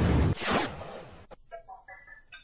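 Whoosh transition sound effect: a loud rushing swish that sweeps and dies away over about a second, followed by a single sharp click.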